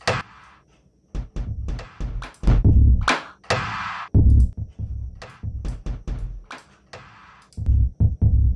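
Electronic trap drum beat starting about a second in: deep 808-style kicks, a snare or clap and quick hi-hat ticks, played through the TrapDrive distortion plugin while it is switched in and out with its bypass button. The distortion adds weight to the kicks.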